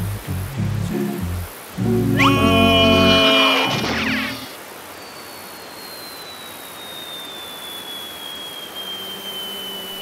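Cartoon score music with a dramatic rising sweep that stops about four and a half seconds in, followed by a long, slowly falling whistle, the classic cartoon falling sound effect, over a steady rushing noise of a waterfall.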